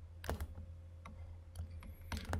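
Faint clicks and taps of a stylus on a pen tablet during handwriting, a few sharp ticks about a quarter second in and again near the end, over a low steady hum.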